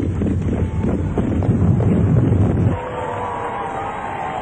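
Fireworks going off: a dense rumble of booms with crackling pops, which cuts off suddenly about two and a half seconds in. A quieter sound with thin sliding tones follows.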